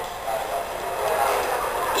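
Steady background hiss of the recording, with no bass and no distinct events, filling a pause between spoken phrases.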